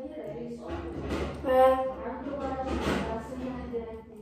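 An indistinct voice with long held pitched notes, like singing, loudest about one and a half seconds in.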